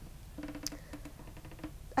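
A girl's faint, closed-mouth hum lasting about a second, a hesitation sound made while she searches for her next words, with a small click near the start.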